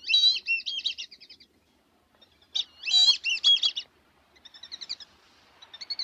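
A bird singing in short, high, rapid warbling phrases, four of them with pauses between, the last two fainter.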